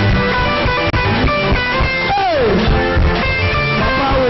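Upbeat church band music led by guitar over a steady bass beat, with a note that slides down in pitch about halfway through.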